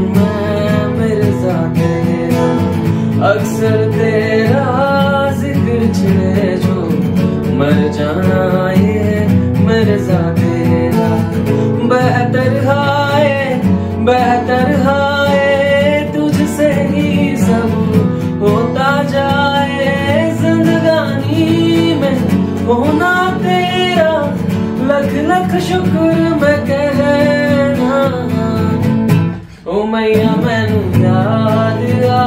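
A man singing a melodic song while accompanying himself on a capoed acoustic guitar. The music briefly dips in loudness just before the end.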